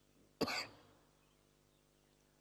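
A single short cough about half a second in; otherwise near silence.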